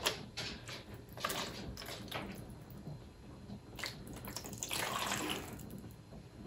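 Compressed coconut coir brick soaking up water in a plastic bin: faint small crackles and water sounds as the brick takes in the water and swells, with a brief louder stretch of soft rushing noise about five seconds in.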